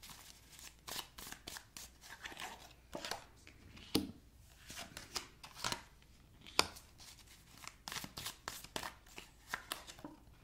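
Tarot cards being handled: shuffled in the hands and laid down one at a time on a table, making a string of irregular soft snaps and taps, with two sharper slaps about four seconds in and past six and a half seconds.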